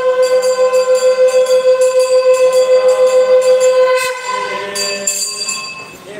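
A long, steady horn-like note from a wind instrument, held for about four seconds before it stops, while a hand bell rings continuously to accompany the aarti lamp offering.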